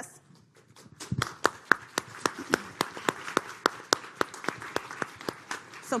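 Audience applauding. It starts about a second in after a brief quiet, and single claps stand out over the general patter.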